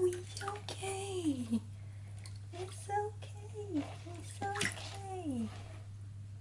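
Guinea pig squealing as it is put into bath water: a string of short, pitched squeals, several of them sliding down in pitch at the end, in distress at the bath. Water splashes in the tub around its legs, most noticeably at the start and about halfway through.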